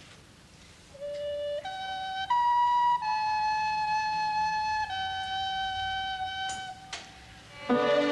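Recorders playing a slow opening melody in one line: three notes rising, then two longer held notes stepping back down. After a brief pause near the end, the full orchestra comes in.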